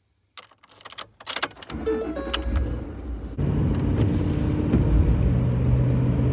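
Keys clicking and jangling as a car key is turned in the ignition, then the engine starts about two seconds in and settles into a steady idle, louder from about halfway through. A few short steady tones sound briefly as it starts.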